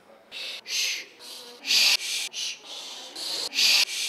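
A quick series of short whispered "shh" shushing sounds, about eight or nine hisses in four seconds, of uneven loudness, with the loudest about halfway through and near the end.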